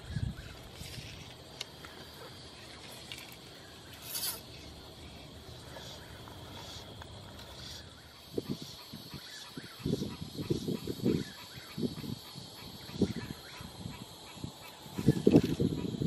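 Outdoor pond-bank ambience with a steady high-pitched drone, typical of an evening insect chorus. A short sharp click comes about four seconds in, and irregular low rumbles and knocks come and go in the second half, growing louder near the end.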